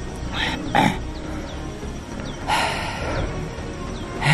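A man breathing hard after a steep climb, with a few heavy exhales, over background music.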